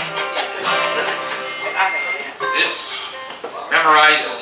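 Two acoustic guitars strummed together, with a person's voice over them at times. A thin high tone sounds briefly about halfway through.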